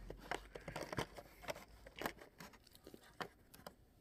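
Faint, irregular clicks and crinkles of a cardboard advent calendar and its thin plastic tray as fingers dig dog biscuits out of an opened window.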